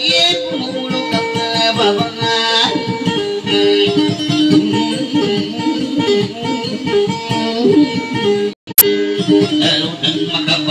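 Guitar playing a repeating plucked dayunday melody, with no singing. Near the end the sound cuts out briefly and a single sharp click follows.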